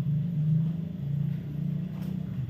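A steady low-pitched hum that wavers slightly in pitch and loudness.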